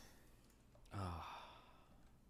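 A man sighs once, about a second in: a short voiced exhale that falls in pitch.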